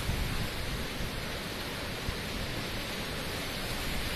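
Steady, even rush of tornado wind and rain.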